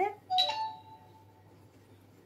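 A short two-note chime, a lower note followed at once by a higher one, ringing for about a second and fading.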